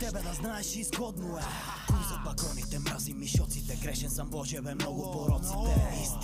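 Bulgarian hip-hop track: rapping in Bulgarian over a beat, with deep bass hits that drop in pitch three times, about every one and a half seconds.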